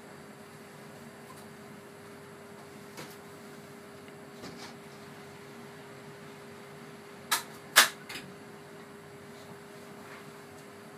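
Two sharp clacks about half a second apart, a few seconds before the end, as a CO2 incubator's door is shut and latched. A steady low hum runs underneath.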